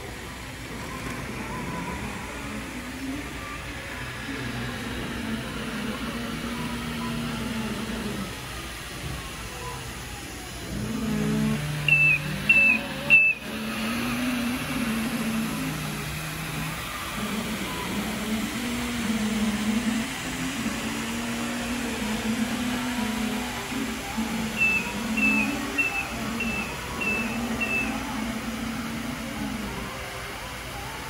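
Tennant T7AMR robotic floor scrubber running steadily over background music. Short high beeps come in a run of three about twelve seconds in and an evenly spaced run of six near the end.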